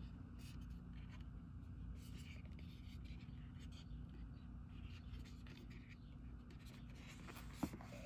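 Fingers rubbing and sliding over a cardboard card box as it is handled, faint scratchy brushes over a steady low hum. A sharp tap near the end as the box is set down.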